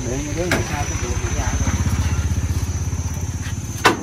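Small motorcycle engine running close by with a fast, even low putter that swells and then fades over about three seconds. A voice is heard briefly at the start, and a sharp click comes near the end.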